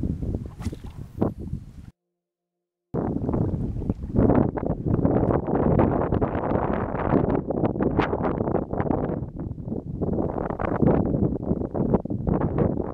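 Strong wind buffeting the camera microphone in gusts, broken by a second of dead silence about two seconds in.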